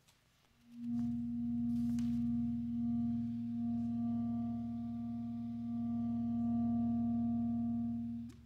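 A steady electronic drone from a clarinet-and-electronics piece: a held mid-pitched tone over low tones, with fainter higher overtones. It fades in from near silence under a second in and holds level almost to the end, where it slides briefly just before it stops.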